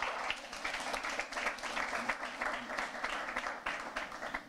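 Audience applause: many people clapping in a dense, steady patter.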